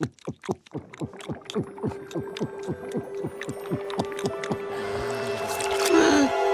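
Cartoon gulping: a long run of quick swallows, about three or four a second, each falling in pitch, as a bottle is drained in one go. A steady held tone and music underneath swell louder toward the end.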